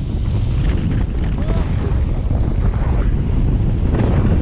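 Wind rushing over the microphone of a handheld camera carried by a skier moving down a slope, a loud, steady low rumble.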